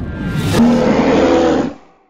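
Short musical sting of a logo animation: a rushing sweep about half a second in, then a brief held chord that fades out shortly before the end.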